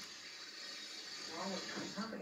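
Faint speech from a television programme, heard through the TV's speaker over a steady hiss; the voice comes in about halfway through.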